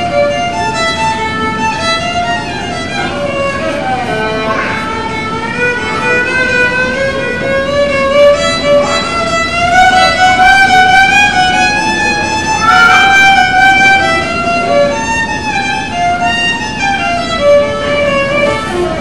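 A young student playing a solo violin melody, with short and held notes that climb through the middle of the phrase.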